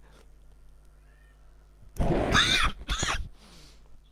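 An animal's drawn-out call, wavering up and down in pitch, about halfway through, followed at once by a shorter, weaker one.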